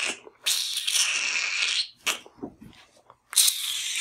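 A man steupsing: air sucked in through the teeth in a long hiss, twice. The first lasts about a second and a half and starts about half a second in; the second starts near the end. It is the Trinidadian steups, a sign of annoyance, disgust or disagreement.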